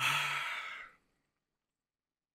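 A man sighs once: a breathy exhale about a second long that begins with a short low hum.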